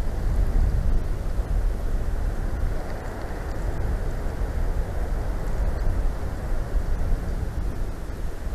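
Snowstorm wind gusting against the nest-cam microphone: a heavy, low rumble that swells and eases with the gusts, with a fainter rush of wind through the trees above it.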